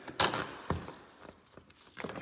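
Magnetic mesh screen door being pushed apart by hand: a sharp click with a brief high ring, then a softer tap, as the magnets along the seam let go and the mesh shifts.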